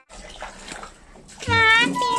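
Water from a garden hose spraying and splashing into a kiddie pool. About a second and a half in, a child's high voice starts up over it, louder than the water.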